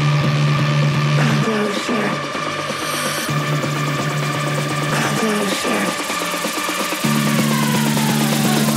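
Electronic dance music from a DJ mix: a long held synth note over bass notes that change every second or two, with a rising sweep building in the highs. The held note slides down in pitch near the end.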